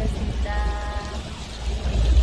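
Low, steady rumble aboard a small fishing boat, with a woman's short, drawn-out "bye" about half a second in.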